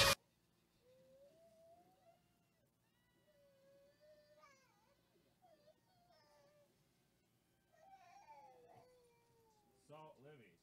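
A cat meowing faintly: about four drawn-out calls, each sliding up and down in pitch.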